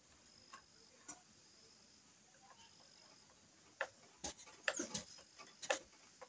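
Faint handling, then a series of sharp clicks and knocks from about two-thirds in: hands working on the motor housing of an electric saw during a repair of its carbon brushes.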